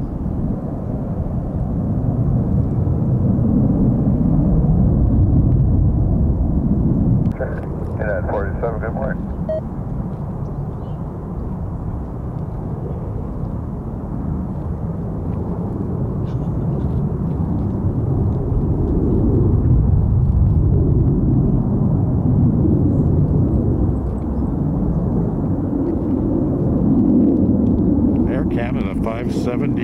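Jet airliner engine rumble, low and swelling and fading, dropping off suddenly about seven seconds in.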